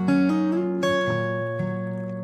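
Acoustic guitar in open D tuning, fingerpicked: a few notes of a stretchy G chord shape are plucked one after another. One note slides up in pitch about a third of a second in, and the notes are left ringing and slowly fading.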